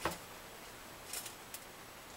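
Faint clicks and ticks of steel guitar strings being threaded through the string-through ferrules in the back of an electric guitar body: one sharp click at the start, then two lighter ticks a little past the middle.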